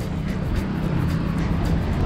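Street traffic on a busy city road: vehicle engines running with a steady low rumble.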